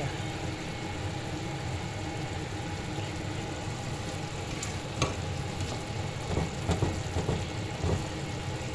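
Chicken livers in soy-and-vinegar adobo sauce sizzling and simmering in a frying pan, stirred with a metal fork that scrapes and clinks against the pan, with a few sharper clinks from about five seconds in.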